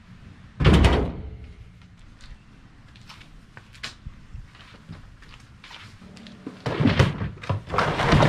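A heavy thunk a little under a second in, a few faint clicks, then a run of loud knocks and clatter near the end as the drawers of a plastic drawer cart are pulled open.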